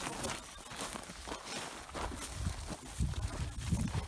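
Footsteps through dry grass and brush, with irregular rustling and snapping of stems. A low rumble on the microphone grows stronger in the second half.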